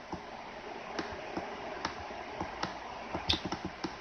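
Irregular light clicks from a computer being operated, over a steady low hiss.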